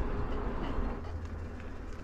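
Steady low rumble of riding noise, wind on the microphone and tyres rolling, from an electric bike moving along a trail.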